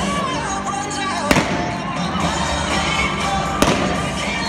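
Two sharp bangs about two seconds apart, going off over loud music with singing.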